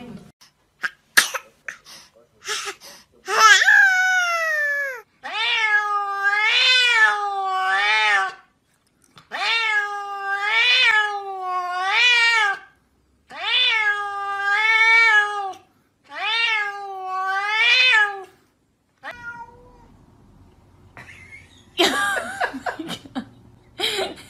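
A cat meowing over and over while a hand pets its head: about a dozen drawn-out meows, each rising and then falling in pitch, in runs of two or three, starting a few seconds in and stopping a few seconds before the end.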